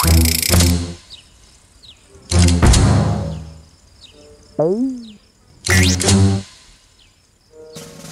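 Cartoon sound effects over light music: pairs of soft thumps, near the start, around a third of the way in and again later, as a character jumps during a warm-up. About halfway through comes a short wavering tone that slides up and down.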